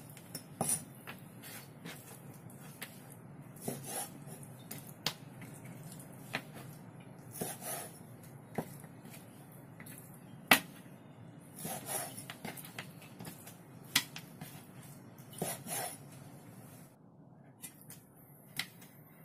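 Chinese cleaver cutting beef short ribs apart along the bone on a wooden cutting board: irregular knocks of the blade against the board, the loudest about ten seconds in.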